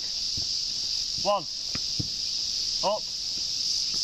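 Steady, high-pitched drone of a summer insect chorus, with a couple of short knocks about halfway through.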